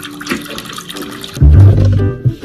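A Doberman lapping water from a bowl, a wet splashy sound, until about one and a half seconds in, when loud background music with deep bass notes comes in over it.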